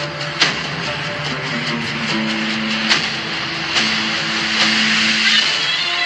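Background music with long held notes, plus a sharp click about half a second in and another near three seconds.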